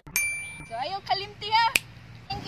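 A single bright, bell-like ding just after the start, ringing for about half a second. It is followed by a young woman's soft voice.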